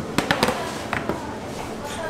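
Metal baking trays clattering against each other and a stainless-steel worktable as they are handled and stacked: a quick run of sharp knocks early on and a couple more about a second in.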